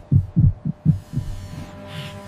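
Heartbeat sound effect, a quick run of low thumps in the first second or so that then fades, over a sustained tense music drone: it marks the suspense of a delicate cut.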